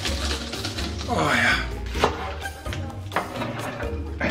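Background music with a voice briefly in it about a second in, and two sharp knocks of a kitchen knife on a wooden cutting board, about two and three seconds in.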